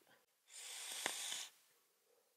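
Breath and airflow of a hit on a rebuildable vape atomiser (Wotofo Troll dripper with dual Clapton coils): a single hiss about a second long with a faint click in the middle.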